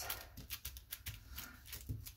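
Paper crinkling and rustling under the hands as a folded page is pressed and smoothed flat, a quick run of small dry crackles.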